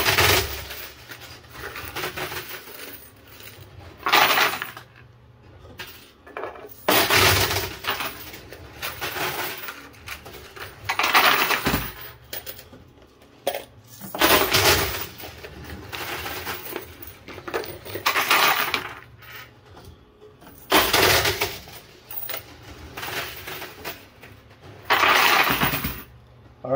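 Quarters clattering and clinking in a coin pusher arcade machine, in loud bursts about every three to four seconds as coins drop and are pushed along the metal shelves.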